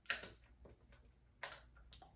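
A few faint sharp clicks, a small cluster just at the start and a couple more about a second and a half in: the switch of an old hand-held blow dryer being flicked while the dryer fails to start.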